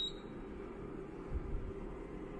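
Steady low hum of an Anycubic Photon resin 3D printer's cooling fan as the printer starts an exposure test, with the tail of a row of short high beeps right at the start and a soft low bump about one and a half seconds in.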